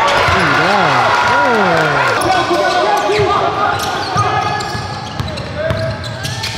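Live basketball game sound in a gym: several voices shouting from the stands and bench, loudest in the first two seconds, with a ball bouncing on the hardwood floor.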